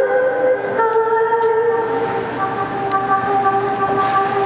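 A live band's sustained chords, held as a steady drone with no drums and shifting to new notes twice.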